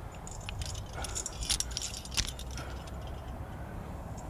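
Aluminium climbing carabiners clinking and jangling against each other as a quickdraw clipped to a cam is handled, a burst of light metallic clicks with two louder clinks in the middle.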